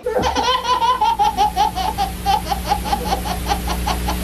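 Baby laughing hard in a long, unbroken run of short, rapid laughs, about seven a second, over a steady low hum.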